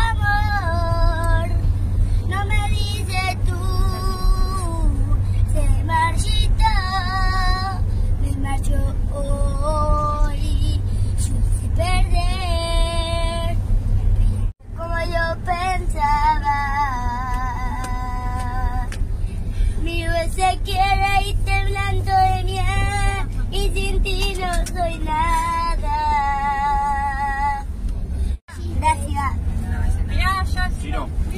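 A young boy singing a melody with a wavering vibrato, phrase after phrase, over the steady low rumble of a moving bus. The sound cuts out briefly twice, about halfway through and near the end.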